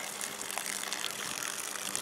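Flush water running from the end of a garden hose and splashing onto a lawn, over a steady low hum.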